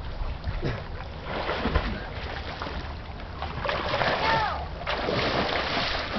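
Pool water splashing and churning as a swimmer strokes through it. A short, high voice call comes about two-thirds of the way through.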